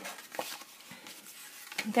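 Folded cardstock being handled and set down: faint paper rustling with a light tap about half a second in.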